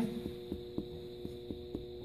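Light finger-on-finger percussion taps over the lower left ribs (Traube's space), a series of soft thuds a few per second. The note is resonant, which the examiner takes as normal. A steady electrical hum runs underneath.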